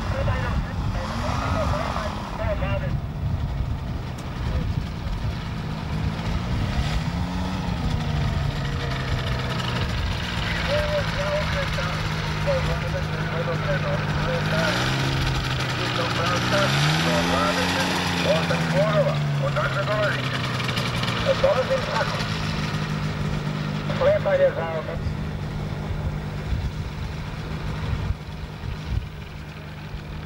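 Small engine of a motorised hang-glider trike running as it taxis, its pitch rising and falling several times as the throttle is opened and closed.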